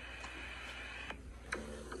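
A small spiral notebook being handled: a faint rustle in the first half, then a few light clicks.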